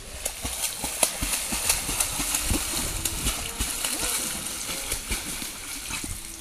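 A dog splashing and scrambling through a shallow stream at the foot of a small waterfall, with irregular splashes and paw knocks on wet rock over the steady rush of falling water.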